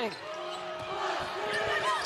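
Arena crowd noise under live basketball play, with sneakers squeaking on the hardwood court during a scramble after an inbound pass.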